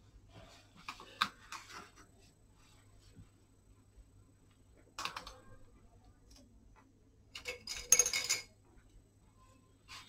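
Faint scattered clicks and light knocks of a painter's brushes being handled and set against the table and plastic mixing palette, with the loudest cluster of knocks a little before the end, over a faint steady hum.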